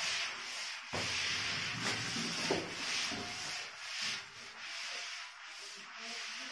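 Felt whiteboard eraser rubbing across the board in repeated back-and-forth strokes, about two a second, wiping off marker writing.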